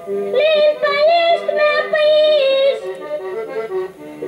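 Accordion accompanying a high voice, most likely a woman's, singing a line of a traditional Portuguese folk song (cantares), the voice sliding up into a held note about a third of a second in and breaking off near the end.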